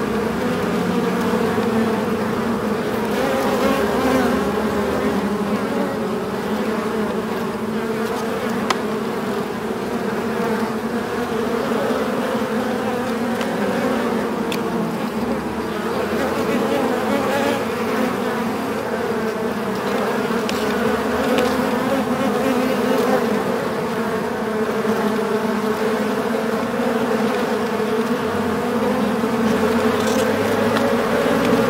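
Many bees in a beehive buzzing together in a steady, dense hum, with a faint click now and then.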